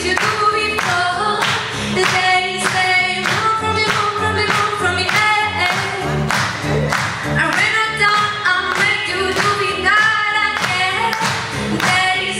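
A choir singing a pop song over a steady beat.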